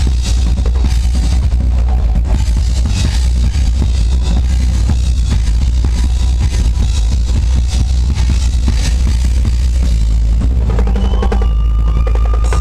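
Live drum kit played hard and fast, with a pounding bass drum, snare hits and repeated cymbal crashes, over a loud, steady, bass-heavy backing track. A held high tone enters near the end.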